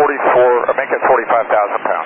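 A pilot's voice transmitting over an air traffic control radio frequency, thin and narrow in tone, reading out the fuel on board.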